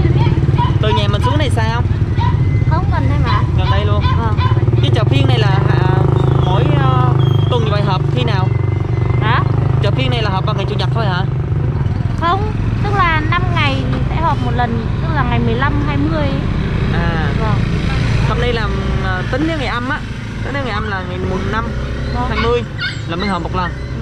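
People talking, with an engine running steadily underneath as a low hum that weakens after about twelve seconds.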